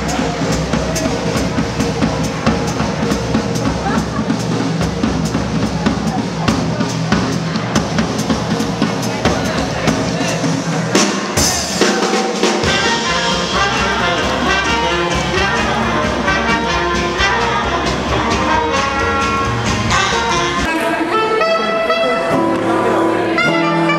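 Jazz band music with brass horns, including trumpet, over a drum kit. The music changes abruptly about halfway through.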